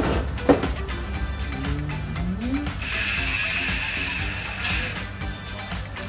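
Mountain bike rear hub ratchet clicking rapidly as the rear wheel spins freely on a repair stand while the drivetrain is being cleaned. A steady hiss joins in from about halfway through.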